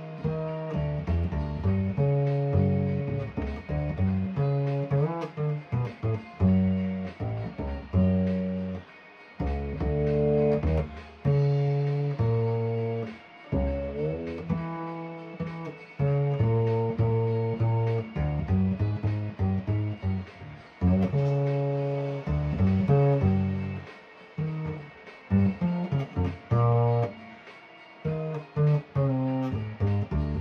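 Upright double bass played pizzicato: a jazz line of single plucked notes, each ringing and dying away, with short gaps between phrases and a few quick runs.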